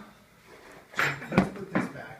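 Plastic sippy cup dropped from a high chair onto a hardwood floor: after a second of quiet, three quick knocks in under a second as it hits and bounces, the middle knock the loudest.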